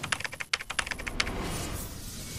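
Keyboard-typing sound effect for on-screen text being typed in: a quick run of about a dozen key clicks over the first second or so.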